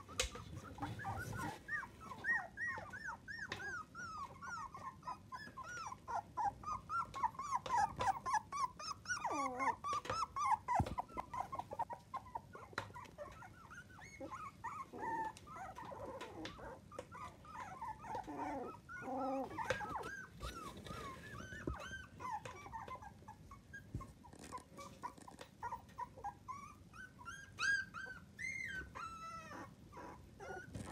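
A litter of 25-day-old miniature dachshund puppies making many short high-pitched whimpering calls, each rising and falling in pitch, busiest over the first dozen seconds and more scattered after, with a higher-pitched burst near the end.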